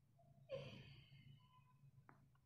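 Near silence, broken about half a second in by a faint, short breathy sound like a sigh that fades within a second.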